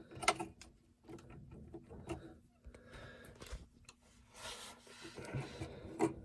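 Faint handling sounds of hands working a plastic wiring connector on a washing machine's shifter switch: one sharp click near the start, then small scattered clicks and light rustling.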